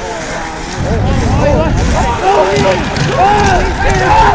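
Several voices shouting and calling out over one another in short rising-and-falling cries, over a steady low rumble. They grow louder about a second in.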